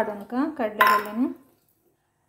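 A steel bowl clinking against a plate as whole chana dal is tipped out of it, with one sharp clink a little under a second in. A high, wavering voice-like sound runs over it for the first second and a half, then it goes quiet.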